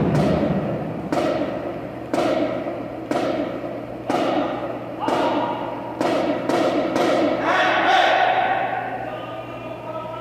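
Percussion band playing single loud unison drum hits about once a second, each ringing out in the echoing gymnasium, with a few quicker hits around six to seven seconds in. A sustained pitched tone then swells in under the hits, and the hits fade away toward the end.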